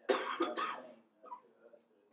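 A person coughing: two quick coughs close together in the first second.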